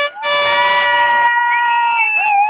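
Horns sounding: a long blast on one held note, overlapped by a second, higher held note that starts just after it and carries on once the first stops.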